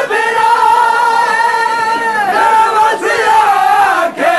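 A male noha reciter chanting a Shia Muharram lament in long held lines that bend slightly in pitch, with a crowd's voices around him. The line breaks briefly a little after two seconds in and again near three seconds.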